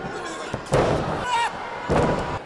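Wrestlers' bodies slamming onto the wrestling ring's canvas: a loud thud just under a second in, a shout rising over the crowd noise, then a second loud thud near the end.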